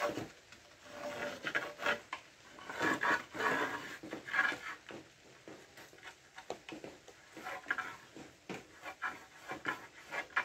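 Irregular scraping and rubbing as ceramic tiles are handled and marked with a pencil: strokes of the pencil lead and a loose tile slid over the laid tiles, loudest a few seconds in, with a few light clicks and knocks later.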